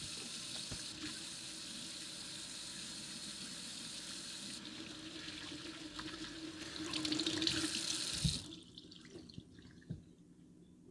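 Kitchen tap running into a stainless steel sink, the stream splashing over hands being washed under it. The water is shut off about eight and a half seconds in.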